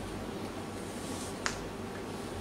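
Quiet room tone with a steady low hum, broken once by a single sharp click about one and a half seconds in.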